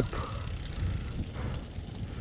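Mountain bike rolling along a paved road: a steady low rumble of tyres on asphalt with wind rushing over the camera microphone.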